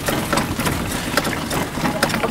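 Chairlift ride: a steady rushing noise with many irregular sharp clicks and knocks, from wind and handling on the microphone and the moving chair.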